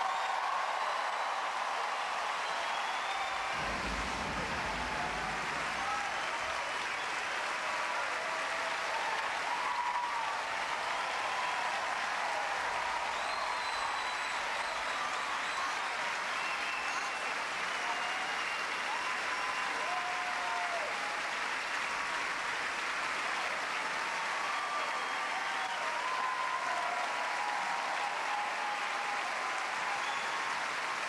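Large theatre audience applauding, a steady sustained ovation.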